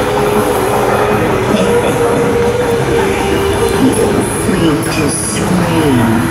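Ambient attraction soundtrack of long held droning tones playing over loudspeakers, the tones shifting pitch now and then, with a few sliding tones in the second half.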